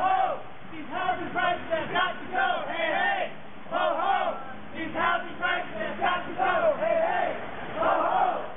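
A crowd of marchers chanting slogans together in repeated shouted phrases, with short pauses between them.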